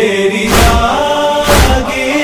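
Urdu noha lament: long held sung notes from a male reciter with backing voices, over a slow beat of deep thumps about once a second.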